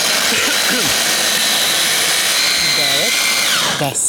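Hand blender motor on a mini chopper bowl grinding roasted hazelnuts with coconut oil and cocoa into a paste: a steady high whine that winds down in pitch and stops just before the end.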